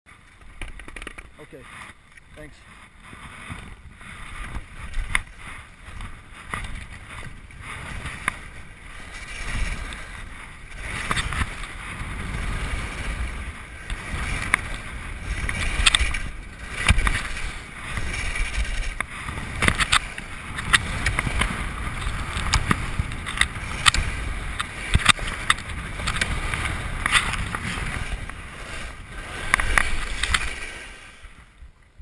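Rossignol S7 powder skis carving and scraping down firm snow on a gated race course, with a steady rush of wind over the body-mounted microphone. It builds from about ten seconds in as speed picks up, and short sharp scrapes and hits come again and again as the edges bite in the turns.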